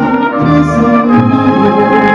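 Mariachi band playing an instrumental passage: violins and brass holding sustained chords over a low bass line that steps to a new note about every second.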